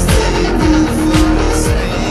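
Distorted electric guitar in drop C tuning playing a heavy rock part along with a backing track, over a steady beat of deep kick drum hits about twice a second.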